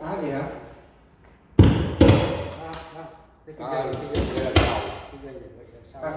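Several loud thumps and knocks: one about a second and a half in, more just after, and a cluster around four seconds. A man's voice is heard between them.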